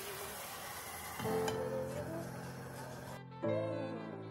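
Tomato and onion sauce sizzling in a stainless frying pan, an even hiss that cuts off suddenly about three seconds in. Soft background music plays throughout.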